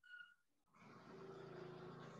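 Near silence on a video call, with a faint low hum starting about a second in.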